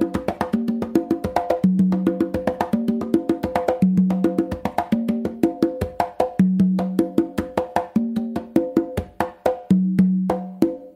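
Congas played by hand in a mambo tumbao: a fast, steady run of slaps and strokes with ringing open tones, the lower drum's deep open tone coming back every couple of seconds.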